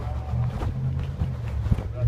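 A steady low rumble, with a faint voice early on and a few short clicks.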